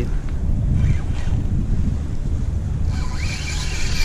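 Wind buffeting the microphone on open water, a steady low rumble, with a brighter hiss joining about three seconds in.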